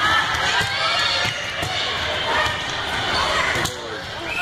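Volleyball rally: a few sharp ball hits and thumps, with players and spectators calling out and shouting over steady crowd noise.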